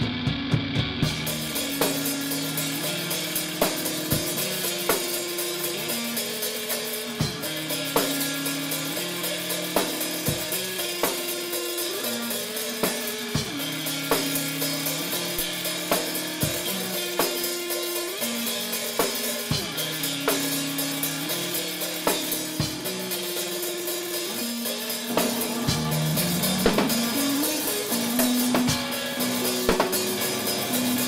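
Electric guitar and drum kit playing rock together: a low guitar riff repeating every few seconds over steady drumming with snare and kick. About 25 seconds in the guitar slides upward and the playing gets a little louder.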